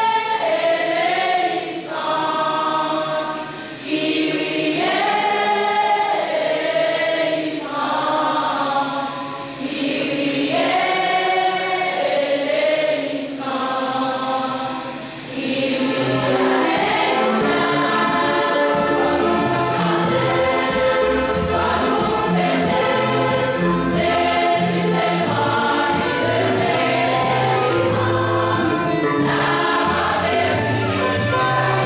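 Church choir singing a hymn in long phrases with short pauses between them. About halfway through, a low bass accompaniment comes in and the singing runs on without breaks.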